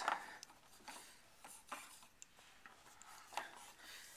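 Faint handling noise: a few scattered light clicks and knocks with some rubbing as a gas hose is moved across a lab bench top.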